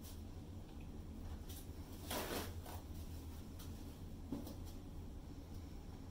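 Faint handling noises over a steady low hum: a brief rustling scrape about two seconds in and a light knock a little after four seconds.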